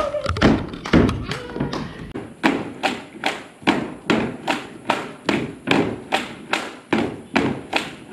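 Bamboo poles of a pole dance clapped together and knocked on wooden blocks. They keep a steady rhythm of about three wooden knocks a second, which settles in after the first couple of seconds.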